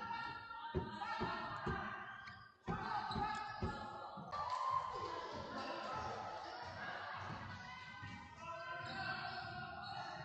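A basketball being dribbled on a hardwood gym floor, a run of sharp bounces about twice a second, with a short break about two and a half seconds in. After about four seconds the bounces give way to a busier wash of voices and noise echoing in the large hall.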